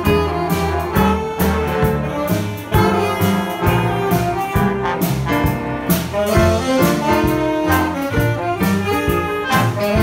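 Jazz band playing an up-tempo tune: horns carry the melody over a steady beat of drum hits.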